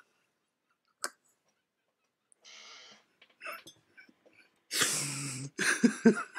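A man holding in laughter: soft breaths and near quiet, then a sudden loud burst of laughter breaking out about five seconds in.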